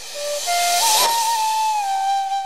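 Background music: a breathy flute plays a few quick rising notes and settles on a long held note, over a rushing hiss that swells and peaks about halfway through.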